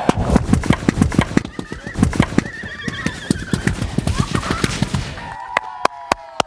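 A chain of methane-filled balloons bursting and igniting one after another in a rapid, irregular string of sharp pops with a deep rumble of burning gas, lasting about five seconds before dying away.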